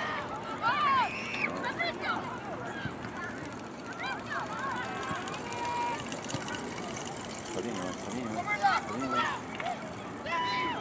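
Soccer spectators and players calling out during play: scattered short shouts from several voices, loudest about a second in and again near the end, over low background chatter.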